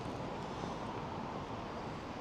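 Steady outdoor background noise of wind, even and unbroken, with no distinct event standing out.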